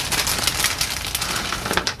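Thin clear plastic bag crinkling and crackling as it is pulled open and handled, with small resin wheels shifting inside it.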